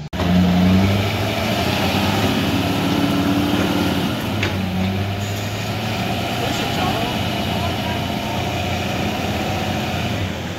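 Diesel dually pickup truck engine running steadily, with a low drone, while hitched to a trailer in deep mud.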